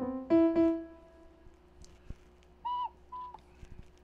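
Two keyboard notes played at the start, the second ringing and fading over about a second, then two short high toots on a Flutophone, a small plastic recorder-like pipe, as the player tries for a starting note in a higher key.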